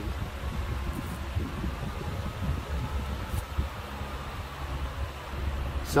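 12-inch exhaust fan running steadily: a low hum with an even rush of moving air.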